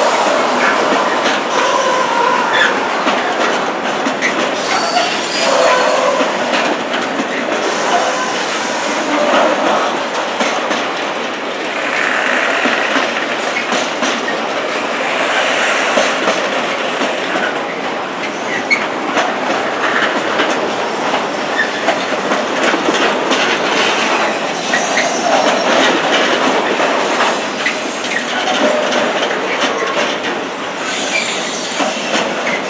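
Container freight train's loaded wagons rolling past in a continuous rumble, wheels clicking over the rail joints. Brief wheel squeals come and go.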